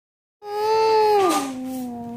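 A child's voice holding one long drawn-out vocal tone, steady at first, then sliding down in pitch a little over a second in and held at the lower pitch.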